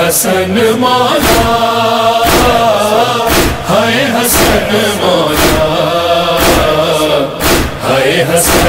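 Male voices chanting a noha, a mournful Urdu lament, in long held lines over a sharp beat about once a second, the rhythm of matam (hands striking the chest) that keeps time in noha recitation.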